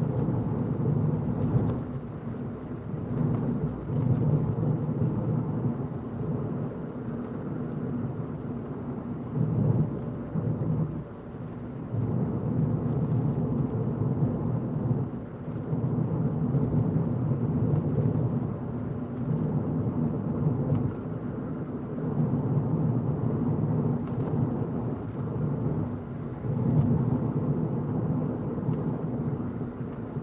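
Road and engine noise of a car moving at road speed: a steady low rumble that swells and eases every few seconds.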